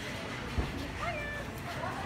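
A few faint, short, high-pitched squeaky vocal sounds, like a small voice cooing or mewing, over a steady low background hum, with a soft thump about half a second in.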